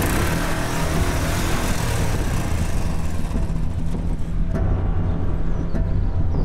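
Motorcycle engine running steadily as the bike pulls away, its higher sound thinning out after about four seconds while the low engine note carries on.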